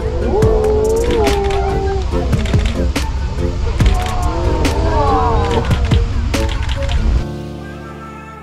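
Background music. A busy stretch of sharp clicks and gliding tones cuts off about seven seconds in, and a quieter, soft piece of long held notes takes over.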